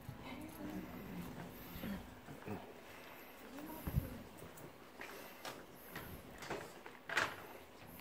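Quiet hall with faint murmuring voices and scattered small knocks and clicks. There is a low thump about four seconds in and a brief louder noisy burst about seven seconds in.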